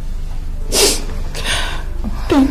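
A person crying: a sharp, sobbing breath about three quarters of a second in, then a second, weaker sob.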